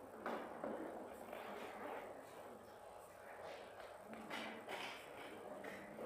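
Faint, distant talking, with a few light knocks and taps.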